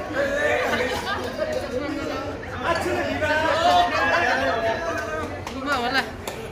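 Lively chatter of several people talking over one another, continuous throughout.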